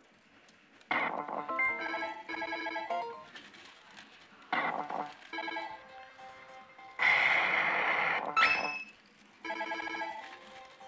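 Electronic sound effects from a Millionaire God: Kamigami no Gaisen pachislot machine as its reels spin and stop: short runs of chiming tones, then a louder, noisier jingle about seven seconds in that ends with a quick rising tone.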